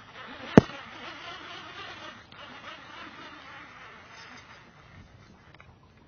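Baitcasting reel making a cast: a sharp click about half a second in, then the spool whirring as line pays out, fading over the next few seconds.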